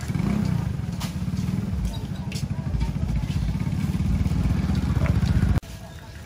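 Motorbike engine running loud and steady with a rapid, even low pulse, cutting off abruptly shortly before the end.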